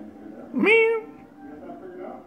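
Kitten giving a single loud meow about half a second in, sweeping up in pitch and then holding briefly.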